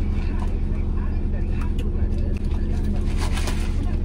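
Steady low hum of a car idling, heard from inside the cabin.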